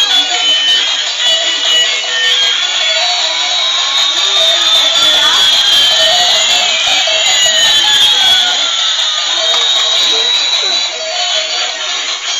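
Battery-operated light-up toy airliner and toy school bus playing their electronic tunes and sound effects at once. A slow rising whine and a slow falling whine cross each other in the middle, over a busy run of high electronic beeps.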